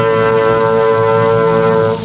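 Closing theme music: a brass section holding one long note, which breaks off just at the end.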